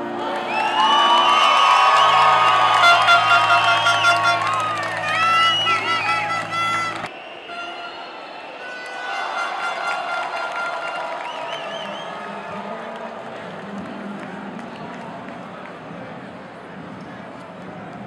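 Large crowd of basketball fans singing and cheering loudly together over music for about seven seconds. The sound cuts off abruptly and is followed by a quieter crowd murmur with scattered voices.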